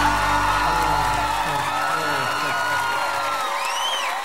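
Music with many voices whooping and yelling over it at once; the bass line drops out about three and a half seconds in.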